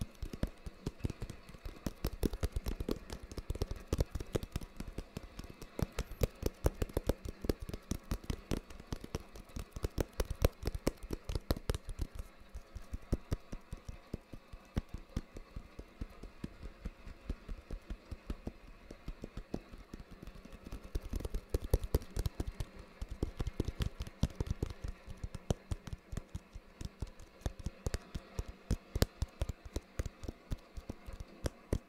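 Rapid fingertip and fingernail tapping on a flat, hard rectangular object, close to the microphone, in quick irregular flurries over a faint steady hiss of rain. The tapping is densest in the first dozen seconds, thins out for a while in the middle, then picks up again.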